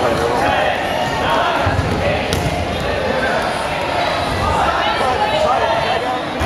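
Players and spectators shouting and talking over each other in a gymnasium, with rubber dodgeballs bouncing and thudding on the hardwood floor and one sharp smack a little over two seconds in.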